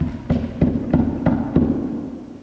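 A hand knocking on the floor: about six dull knocks at a steady pace of roughly three a second.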